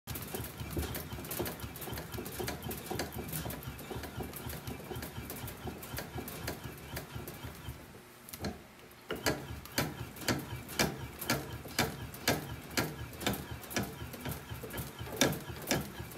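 Baseball bat being rolled back and forth by hand between the rollers of a bat-rolling machine during a heat-roll break-in, a rhythmic run of rubbing strokes. It stops briefly about eight seconds in, then resumes at about two strokes a second.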